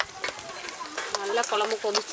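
Thick tamarind curry bubbling and sizzling in a clay pot over a wood fire, with a coconut-shell ladle stirring and knocking against the pot. A voice joins in about a second in.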